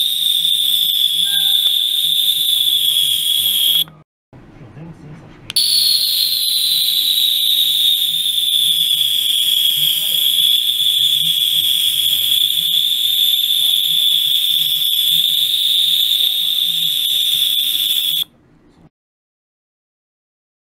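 High-pitched steady whistle from a rechargeable 50 kHz ultrasonic cleaner driving a glass bottle of tap water. It cuts out about four seconds in, comes back a second and a half later with a short downward glide in pitch before it settles, and stops about two seconds before the end.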